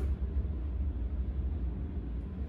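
Steady low ventilation hum with a faint hiss, in a small tiled bathroom.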